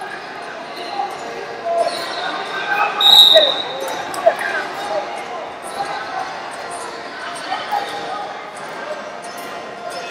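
Wrestling shoes squeaking on the mat as two wrestlers scramble, with one high, piercing squeak about three seconds in and a sharp smack a little after, over the din of voices in a large hall.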